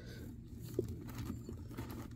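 Faint handling sounds of a plastic dinosaur action figure being worked by its tail: light scattered clicks and a short knock a little before one second in.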